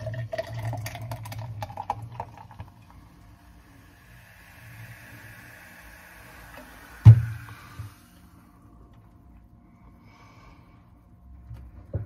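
Carbonated soda poured from a plastic bottle into a tall glass: the splashing pour rises in pitch as the glass fills, then the foam fizzes. One sharp knock about seven seconds in is the loudest sound.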